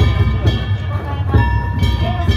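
Danjiri festival music (danjiri bayashi) played on the float: steady low drumming with struck hits, under high held melody notes that shift pitch about once a second.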